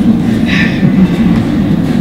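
Loud low rumbling from a handheld microphone being handled.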